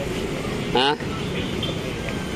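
Steady city street noise of traffic. One short spoken 'Ha?' comes just under a second in.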